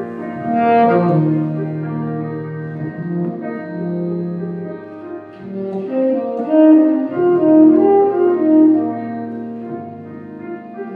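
Saxophone playing a melodic solo line of held and moving notes over piano accompaniment.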